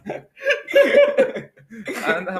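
A man laughing: a short burst of laughter about half a second in that lasts about a second.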